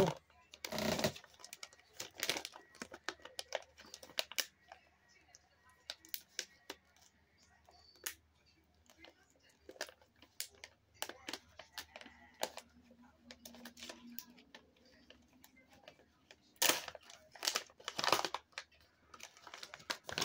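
A plastic bag of dual-line floss picks being handled and opened: scattered crackles and crinkles of the plastic packaging, with two louder rustles near the end.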